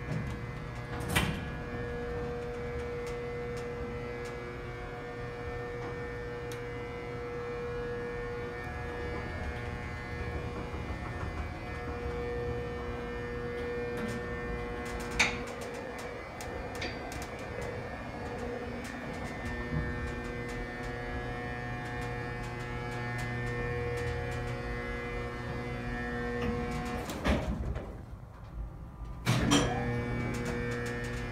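Freight elevator machinery running with a steady multi-toned hum while the car travels. A sharp click comes about a second in and another about halfway through, and a few clunks come near the end.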